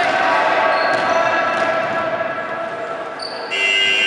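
Basketball game noise in a sports hall: a ball bouncing and voices on the court. Then, about three and a half seconds in, the end-of-game buzzer starts, a steady high-pitched tone.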